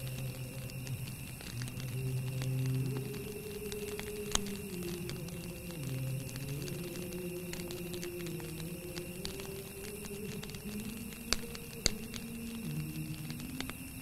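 Slow soundtrack music of low, sustained notes that step and glide from pitch to pitch, over a faint steady high tone. Scattered sharp clicks run through it, with three louder ones about four seconds in and twice at about eleven to twelve seconds.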